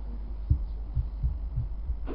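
Microphone noise from the hearing room's sound system: a steady low hum with soft, irregular low thuds every quarter to half second.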